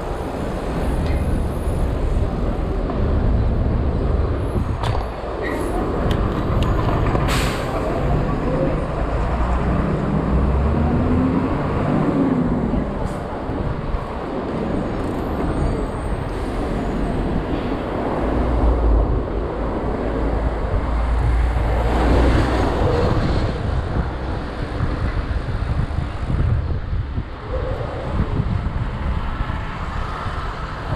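City street traffic heard from a moving bicycle: cars and a bus passing close by, over a continuous low rumble.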